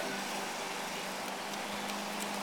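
Steady background hum of a running motor with an even hiss behind it, unchanging throughout.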